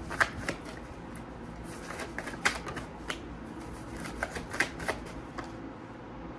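A deck of cards being shuffled by hand, with irregular light flicks and snaps of the cards.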